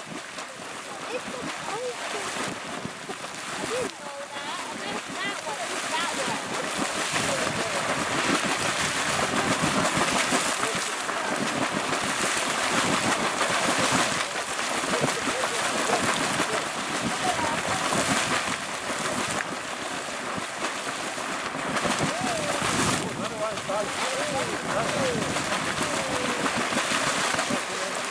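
Bulger's Hole Geyser and the neighbouring Bulger Geyser erupting together: a double splash of water thrown up from two vents and falling back, a steady splashing rush that grows louder over the first several seconds.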